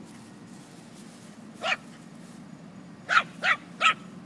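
Small dog barking in short yaps during play: one bark, then three quick barks in a row about three seconds in.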